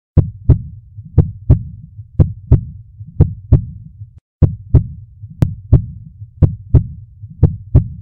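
Heartbeat sound: a double 'lub-dub' thump repeating about once a second, with a short break a little past halfway.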